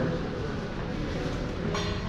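Steady, featureless background noise of a room, with no distinct sounds standing out.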